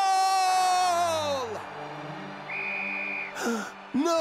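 A cartoon character's long drawn-out vocal cry, sliding slowly down in pitch and fading out about a second and a half in. Background music follows, with a brief high steady note near the middle.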